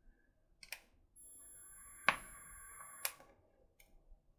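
Someone taking a draw on an e-cigarette: a click, then a faint steady hiss of air and firing coil for about two seconds, with a sharp click in the middle and another as it stops.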